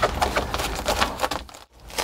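Foil-faced insulation padding and double-sided tape crinkling and crackling under a hand as the tape is pressed down along the edges: a quick run of small dry ticks and crackles that stops abruptly about a second and a half in.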